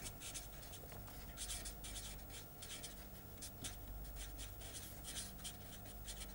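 Marker pen writing on paper: faint short strokes in quick, irregular succession as words are written out.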